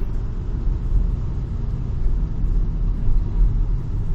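Steady low rumble of a car driving along at an even speed, heard from inside the cabin: engine and road noise with no sudden events.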